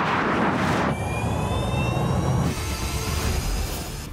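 Cars accelerating hard down a drag strip, among them a Lucid Air Dream Edition: a rush of wind and tyre noise, then a high whine rising slowly in pitch for about a second and a half over a low rumble, then another rush.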